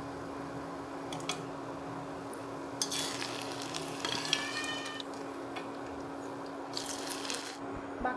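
Oil sizzling steadily around frying sweet-potato pantua balls while a steel slotted spoon scrapes and clinks against the steel pan as they are scooped out, with a short metallic ring about four seconds in. A steady low hum runs underneath.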